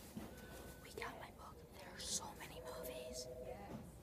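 A person whispering quietly, a few short hissy phrases.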